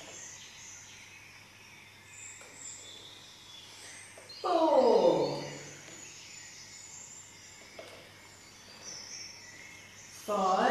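A woman's voice gives one drawn-out call that falls steadily in pitch, about halfway through. Faint high bird chirps and a steady low hum lie under it.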